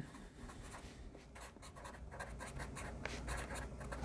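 Sharpie felt-tip marker writing a phrase on a board: faint, quick scratchy strokes, a little louder from about halfway through.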